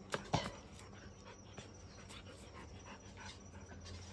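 A dog panting softly, with two sharp clicks in the first half-second.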